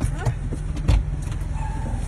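Car engine idling, heard from inside the cabin as a steady low rumble, with a single sharp knock about a second in.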